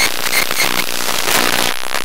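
A Dell laptop's CPU interference, picked up by the Ear Tool's inductor sensor and played through its amplifier as a loud, dense crackling buzz, with a few short high tones near the start. The pulses change as an app opens, the sign of the CPU doing processing.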